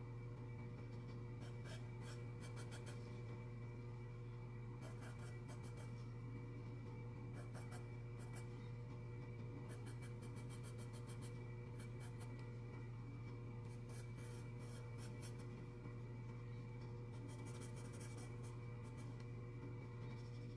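Charcoal pencil scratching on drawing paper in short groups of quick strokes, about eight bursts with pauses between, over a steady low hum.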